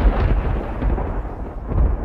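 Deep rumbling noise effect, heaviest in the bass, dipping slightly in the middle and swelling again near the end.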